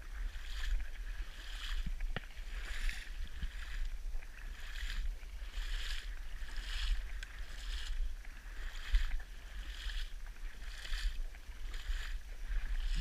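Water swishing and splashing in an even rhythm, about once a second, as something moves steadily through shallow marsh water, over a steady low rumble.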